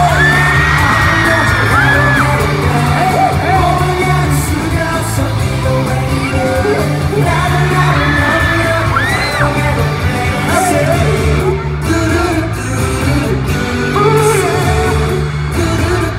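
K-pop song performed live by a male vocal group over an arena sound system, with a steady bass beat and singing. Fans yell and whoop over the music.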